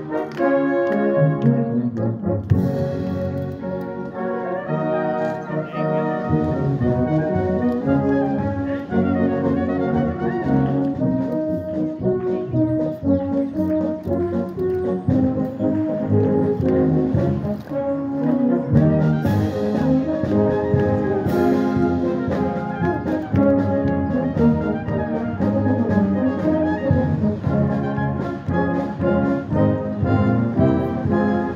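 A British-style brass band playing a medley of service marches, with many brass instruments sounding together in continuous music.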